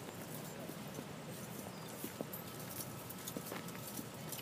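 Footsteps of a group of people walking on a concrete sidewalk: an irregular run of shoe scuffs and light clicks.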